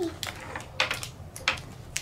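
A small plastic toy lunch box being opened and handled: a handful of short, sharp plastic clicks and taps spread across two seconds.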